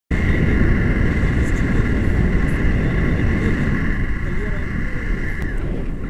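Wind rushing over the camera microphone in flight under a tandem paraglider: a dense, steady low rumble with a steady high whistle over it.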